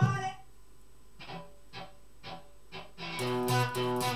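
Fender electric guitar: four short single picked notes, about two a second, then strummed chords start about three seconds in, louder and ringing.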